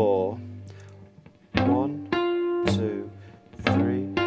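Three-string cigar box guitar in open G (GDG) played fingerstyle: plucked two-note blues phrases that ring and decay, with a note slid upward from fret ten to fret twelve about one and a half seconds in and again near the end.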